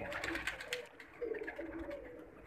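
Pigeon cooing faintly. In the first second there is a run of rustling clicks as the bird's wing and tail feathers are handled.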